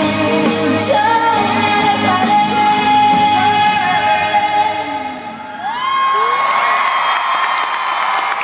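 Live pop music: a female singer holds long notes over the band. About halfway through the accompaniment thins out, and she slides up into a long high held note.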